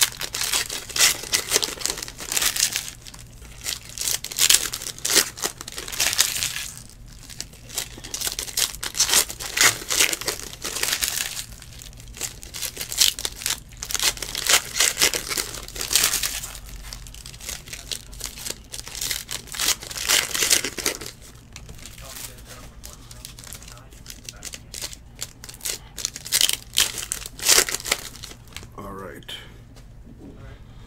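Trading-card pack wrappers being torn open and crinkled by hand, with cards rustled and stacked. The crinkling is busiest over the first two-thirds and thins to lighter handling noises near the end.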